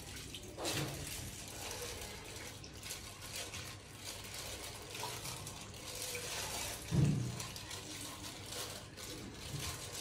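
Water sloshing and trickling in a clogged bathroom floor drain as a gloved hand scoops out sludge, with a brief louder splash or scrape about seven seconds in.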